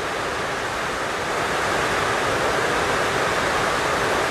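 Very heavy rain falling, heard as a loud, steady, even hiss with no breaks.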